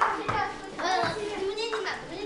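Children's voices: several kids talking and calling out at once in a gym hall.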